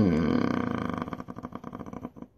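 A man's drawn-out hesitation hum with his lips closed, mid-sentence while he searches for words. It drops in pitch and turns into a creaky rattle as it fades out.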